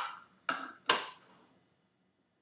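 Two short clicks with a brief scraping rustle, about half a second apart: gloved hands handling a marker pen and a plastic petri dish. After them, quiet.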